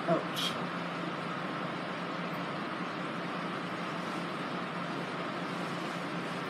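Steady background hum with an even hiss at a constant level: room noise, after a brief spoken "ouch" at the very start.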